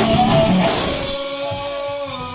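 Rock band playing live with electric guitar and drum kit. About a second in the band stops, leaving a single voice holding a steady note.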